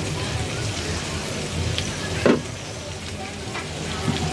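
Chicken feet and potato pieces sizzling in oil and spices in an aluminium pot on a gas burner, a steady frying sound. About halfway through there is a single loud, sharp knock.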